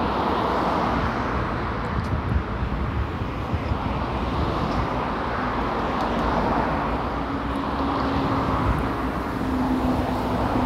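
Steady street traffic noise from a nearby road, with a low steady hum joining about halfway through.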